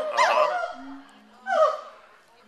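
Gibbons calling: a run of loud whoops that rise and fall in pitch and fade out by about a second in, then one more falling whoop about a second and a half in.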